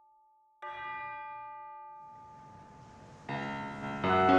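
Film-score music: about half a second in, a single bell is struck and rings out, slowly fading. Shortly before the end, more instruments come in louder.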